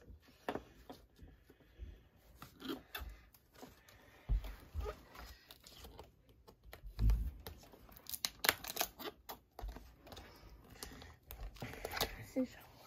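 Scissors jabbing and snipping at the shrink-wrap plastic around a boxed book set, with the plastic crinkling and tearing in irregular clicks and crackles, and a few dull thumps as the package is handled.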